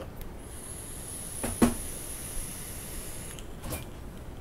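E-cigarette atomizer coil sizzling with a steady high hiss for about three seconds as vapor is drawn through it. One sharp pop about one and a half seconds in is the loudest moment.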